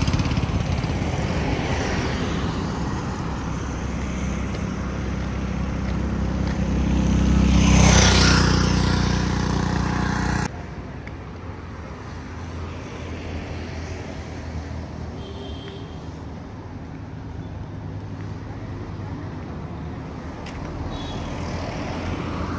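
Highway traffic passing close by. A heavy vehicle's engine and tyres swell to the loudest point about eight seconds in, then the sound cuts off abruptly to quieter, more distant street traffic.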